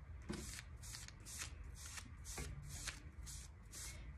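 Foam brush swishing diluted Mod Podge across a paper journal page in quick, even strokes, about three a second.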